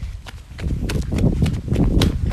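Phone microphone rumbling with handling noise as the phone swings about, with quick irregular footfalls or knocks building about half a second in.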